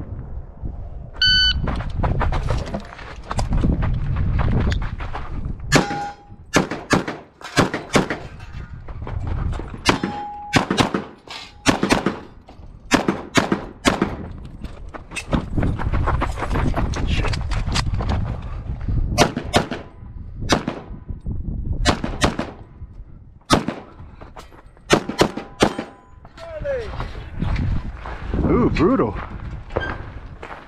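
A shot-timer beep about a second in, then a long string of pistol shots fired in quick groups with short pauses, running for about twenty seconds as the shooter moves through the stage. A voice follows near the end.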